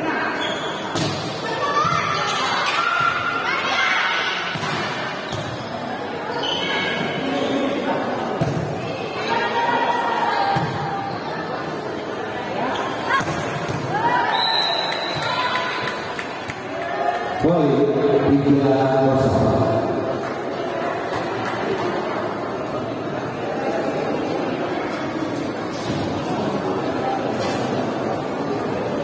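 Volleyball rally in a large echoing hall: the ball is hit and slaps onto the concrete floor with repeated thuds, while players and spectators shout and call throughout. The loudest outburst of shouting comes about two-thirds of the way through.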